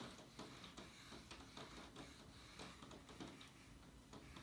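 Near silence, with a few faint, irregular soft ticks from a watercolour brush working very wet paint on paper.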